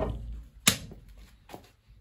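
One sharp click or knock about two-thirds of a second in and a fainter one near the end, from the chain lock and bolt cutters being picked up and handled.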